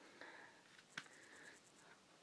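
Near silence: quiet room tone with faint rustling and a single soft click about a second in.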